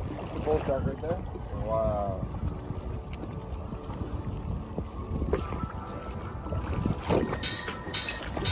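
Wind and sea-water noise on open ocean from a boat, with faint voices in the first couple of seconds. Near the end, music with a regular beat comes in.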